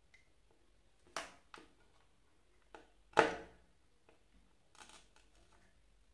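About five sharp clicks and light knocks as small wires, a diode and the soldering iron are handled against a wooden board during soldering, the loudest a knock a little after three seconds in.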